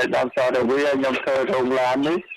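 Speech only: a man talking without pause, as in news narration.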